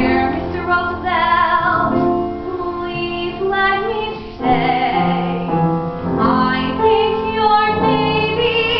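A woman singing a musical-theatre song solo, her held notes wavering with vibrato, over a piano accompaniment.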